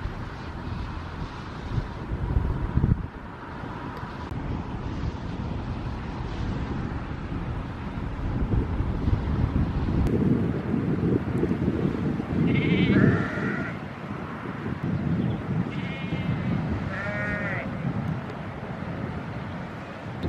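Sheep bleating: several short, wavering bleats in the second half, over a steady low rumble.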